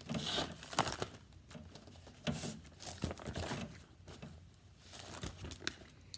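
Paper pages of a sheet-music book rustling as they are turned, in a series of separate crinkling strokes.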